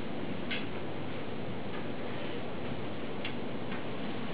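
A few sharp, irregularly spaced clicks from hard-soled shoes and a walking cane's tip on a wooden floor as a man walks, over a steady background hiss.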